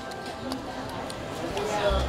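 Quiet background music under a faint voice, with a couple of light clicks, one at the start and one about half a second in, as a 35 mm film cartridge is fitted into the camera's film chamber.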